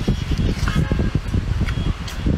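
Close-miked chewing of cooked sea snail meat: irregular wet smacks and soft mouth noises, over a steady low rumble.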